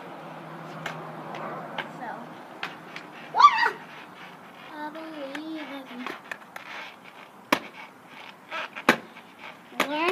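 Skateboard on concrete: the wheels roll and the deck knocks and clacks repeatedly, with two sharp clacks standing out in the second half. A child's voice cries out briefly about three seconds in and makes a wavering sound a little later.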